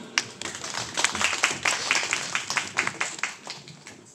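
Audience clapping after a song ends: separate, distinct claps rather than a dense roar, thinning out and fading near the end.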